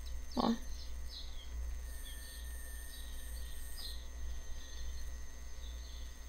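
Quiet background of a steady low hum, with faint, brief high chirps scattered through it.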